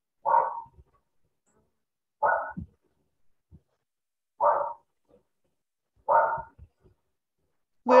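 A dog barking over a video call's audio: four single barks about two seconds apart.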